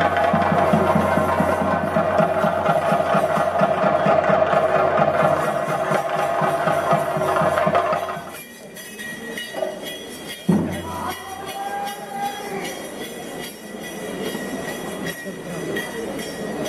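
Temple drumming for a theyyam: rapid, dense drum strokes with a steady high tone held through them, which cut off suddenly about halfway. After that a much quieter mixed crowd background remains, with a single knock a couple of seconds later.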